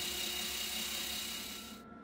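Cordless drill spinning the shaft of a generator, a steady whir that fades away gradually and stops just before the end.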